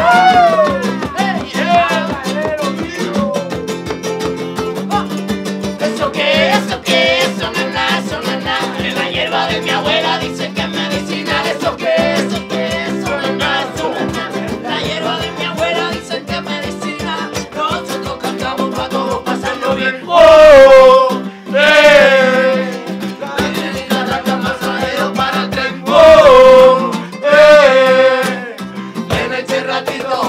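Live acoustic band playing a Latin-style song: strummed acoustic guitar and ukulele over hand drums keeping a steady, even beat, with group singing. The voices get much louder in two short passages, one just past the middle and one near the end.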